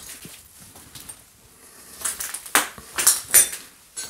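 A run of short, sharp scuffing and crunching noises close to the microphone, the loudest few packed together in the second half. They come from someone moving about with the camera through a derelict house.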